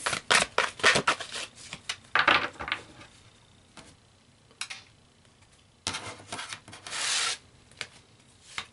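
A deck of tarot cards being shuffled and handled by hand: a quick run of card clicks over the first three seconds, a quiet pause, then a longer rubbing sound of cards sliding near the end.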